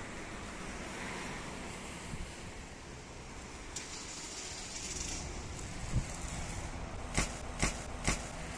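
Wind buffeting the microphone, then a BMX bike landing a drop from a concrete ledge onto paving: a low thud about six seconds in, followed by three sharp clacks over the next two seconds. The landing is on an underinflated front tyre.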